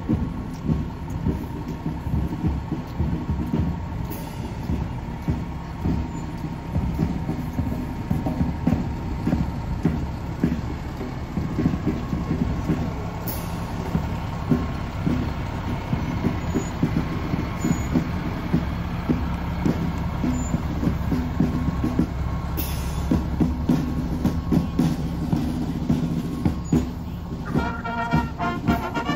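Fire department ladder truck's diesel engine running as it rolls slowly past, a steady low rumble, with a short hiss of air about three-quarters of the way through. A brass band starts playing just before the end.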